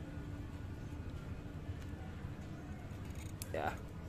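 Steady low background rumble, with a few faint short clicks near the end.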